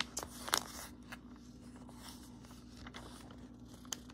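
Glossy magazine pages being handled: a few short paper crackles, the clearest about half a second in and another just before the end, over a faint steady hum.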